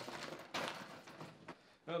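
Soft rustling of a clear plastic bag being handled, with a couple of light knocks from packaging.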